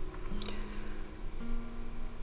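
Quiet background music: a few held low notes, one after another, each changing after about a second.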